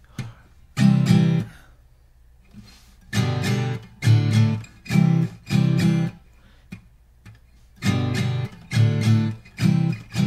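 Taylor GS Mini steel-string acoustic guitar strumming the chord sequence C, G, D, C, one chord at a time. About eight separate strums, each left to ring briefly, with a pause of about two seconds after the first.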